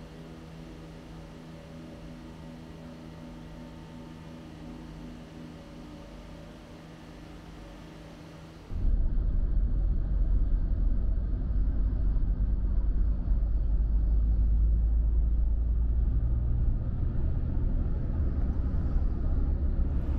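A steady low hum with several held tones, like an engine running. After a sudden cut about nine seconds in it gives way to a much louder, steady low rumble.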